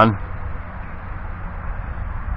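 Wind on the microphone: a steady low rumble with a thin hiss above it.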